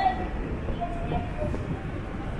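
Street ambience: a steady low rumble, with faint snatches of distant voices of passers-by.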